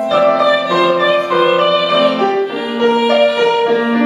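Piano playing a slow, sustained accompaniment passage, with a woman's classical singing voice coming in near the end.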